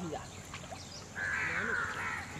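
A harsh, drawn-out bird call begins a little past halfway, over faint voices.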